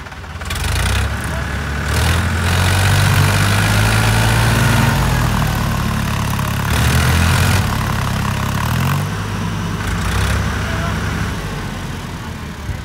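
Powertrac Euro tractor's diesel engine labouring at high revs, bogged in deep mud. It builds about half a second in, holds loud with a few brief surges, and drops back near the end.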